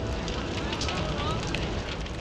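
Fire crackling in burning wreckage over a low rumble, with faint voices in the background.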